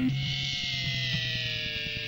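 A distorted electric guitar chord cuts off at the start, leaving a sustained guitar tone that slowly slides down in pitch over a low amplifier hum, heard on a lo-fi cassette recording of a hardcore punk band.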